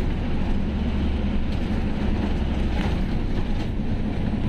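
Truck engine and road noise heard inside the cab while driving, a steady low drone.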